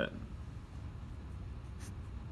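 Felt-tip marker drawing a check mark on paper: one short, faint stroke near the end, over a low steady background hum.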